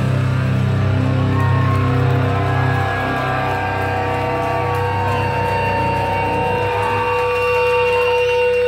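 Live rock band between songs, with the drums stopped: electric guitars and bass ring on in long sustained tones. The low bass drone drops away about three seconds in, while a steady higher guitar tone holds and grows louder.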